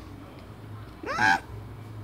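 A single short, high cry about a second in, rising and then falling in pitch, over a faint steady low hum.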